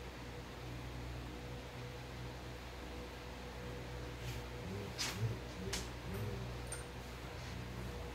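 Quiet steady room hum, with a few light clicks about four to six seconds in from the plastic cup and wooden stir stick as epoxy is poured into small plastic medicine cups.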